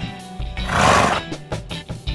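Guitar-backed background music with a loud, noisy animal-call sound effect about half a second in, lasting under a second.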